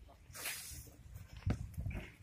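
Drill boots stamping on a paved parade ground: a short hissing noise, then a sharp stamp about one and a half seconds in and a lighter one just after.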